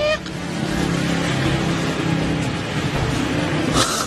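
Road traffic: a car passing close by, with steady engine and tyre noise.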